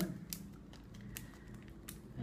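Faint crinkles and a few sharp ticks from hands handling a packet of pipe tobacco, over a steady low hum.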